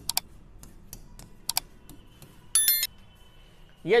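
Sound effects of a like-and-subscribe animation: a few sharp mouse-style clicks, then a short bright bell ding about two and a half seconds in.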